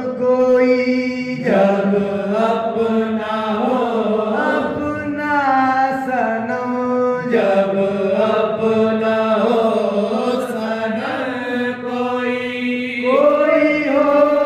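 Group of men singing a Sufi devotional kalam together, in long drawn-out phrases with gliding, ornamented notes over a steady held low pitch.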